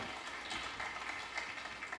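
Scattered audience clapping, a run of irregular claps.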